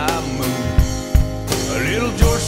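Live country band music with a drum beat and sustained instrumental notes, and brief singing at the edges.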